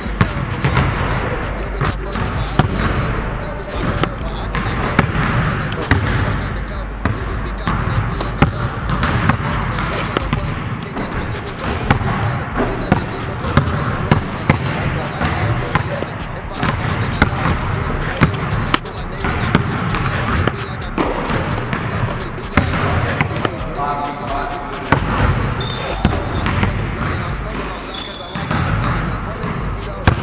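Basketballs bouncing on a hardwood gym floor, many short sharp bounces scattered irregularly through a shooting drill, echoing in a large gymnasium.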